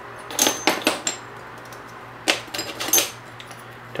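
Stainless steel baffles of a Thunderbeast Takedown 22 rimfire suppressor clinking as they are twisted apart and handled. Two clusters of sharp metallic clicks with brief ringing, about half a second in and again about two and a half seconds in.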